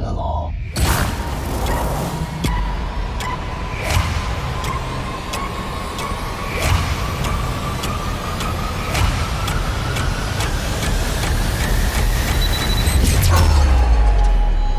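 Action film sound mix: rapid sharp gunshot-like hits over a dense low rumble, under a steadily rising whine that builds for about twelve seconds and breaks off near the end with a heavy low boom.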